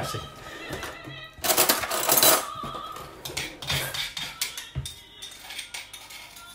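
Kitchen clatter from a heavy granite mortar and pestle being handled: a loud scraping rattle lasting about a second, then scattered knocks and clinks of stone and crockery. Background music plays under it.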